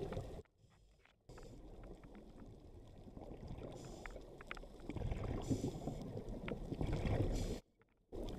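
Underwater ambient noise: a low rumble with scattered faint clicks, broken by two abrupt drops to near silence, about half a second in and near the end.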